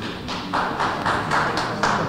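Light applause from a few people in the audience, individual hand claps at about four or five a second.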